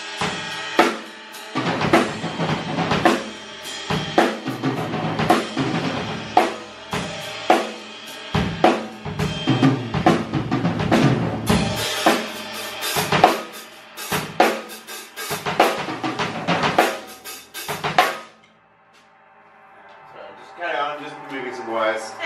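Yamaha acoustic drum kit played in a busy beat, with bass drum, snare and cymbals struck several times a second. The drumming stops abruptly about eighteen seconds in.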